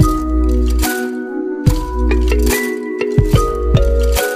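Background electronic music: deep sustained bass notes under held melody tones, with sharp percussive hits every half second or so.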